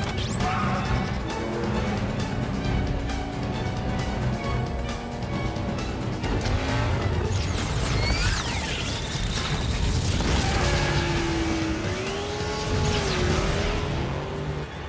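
Car engines revving up and down through gear changes, with rising and falling engine pitch throughout, mixed over film music.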